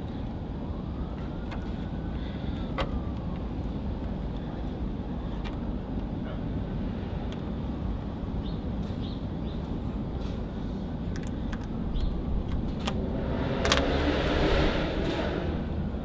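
Braided fishing line rasping as it saws through the foam adhesive tape behind a car's badge letters. It is faint at first over a low steady outdoor rumble, and louder for a few seconds about twelve seconds in.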